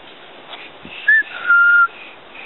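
A person whistling two clear notes: a short higher one, then a longer steady lower one.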